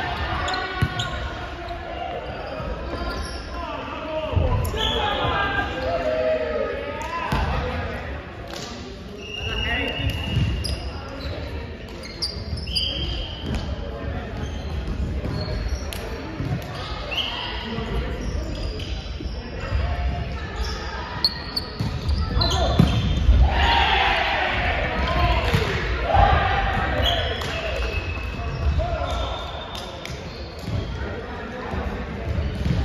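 Indoor volleyball play in a large echoing hall: repeated thuds of the ball being struck and hitting the hardwood floor, short squeaks of sneakers on the court, and players calling out to each other.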